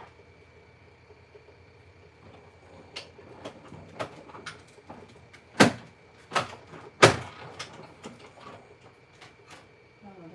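A string of sharp knocks and clacks from hard objects being handled, the two loudest a little over halfway through, about a second and a half apart, over a faint steady high tone.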